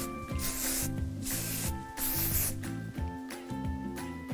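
Aerosol hairspray can sprayed into hair in short hisses, the two main ones about half a second in and about two seconds in, over background music with a steady beat.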